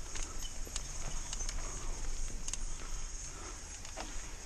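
Mountain bike rolling down a rough dirt singletrack: tyre and trail rumble with irregular clicks and rattles from the bike over bumps, under a steady high-pitched hiss.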